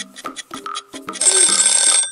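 Light background music with short plucked notes; a little over a second in, a loud bell rings rapidly for under a second and stops abruptly.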